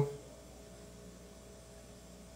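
Quiet room tone with a faint steady hum; a spoken word trails off at the very start.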